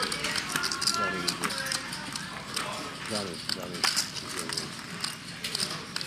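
Poker chips clicking repeatedly as a player fiddles with a stack of chips, under quiet table talk and faint background music.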